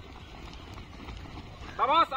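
Faint outdoor background with soft footsteps of a group of runners on a dirt track, ending in a man's loud shout of encouragement near the end.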